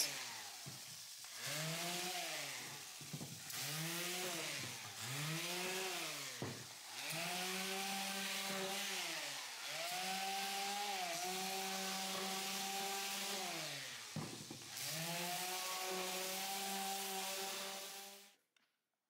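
Electric random orbit sander sanding the fresh-cut edges of softwood table frames, running in stretches with short breaks between, its motor pitch rising and falling with each pass.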